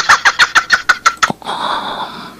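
Sound effect: a quick run of sharp clicks, about ten a second, giving way about a second and a half in to a steady high tone with hiss.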